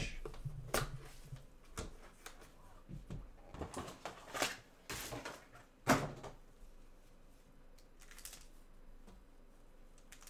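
Cardboard trading-card hobby boxes being handled and set down on a desk mat by gloved hands: a string of light knocks and scuffs, the loudest about six seconds in, then quieter handling.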